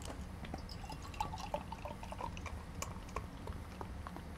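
Faint dripping and bubbling of liquid: many short watery plinks and small clicks, busiest in the middle, over a steady low hum.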